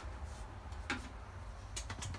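Quiet room tone with a low hum and two faint clicks, a little under a second apart.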